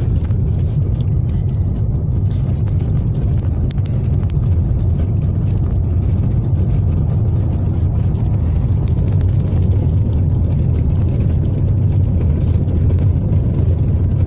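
Steady low rumble of a car driving along a city street, heard from inside the cabin: engine and tyre noise with no gear changes or sudden events.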